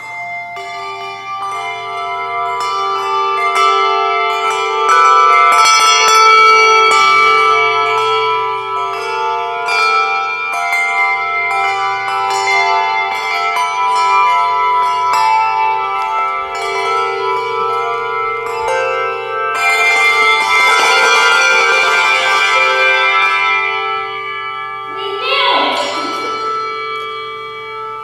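Brass handbells playing a tune. Struck notes ring on and overlap into chords, and the sound grows fuller about twenty seconds in.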